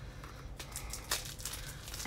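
Faint rustling of hands handling the plastic-wrapped mystery boxes, with two soft ticks about half a second and a second in.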